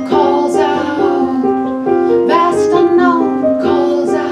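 Digital piano played by two people at one keyboard, a repeating figure of notes, with wordless singing that slides up and down in pitch and swells about every two seconds.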